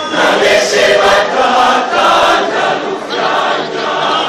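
A large church choir singing together, many voices at once, coming in loud right at the start.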